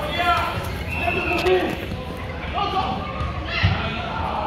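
Players and spectators shouting and calling in a large indoor hall, with a thud from the ball near the end.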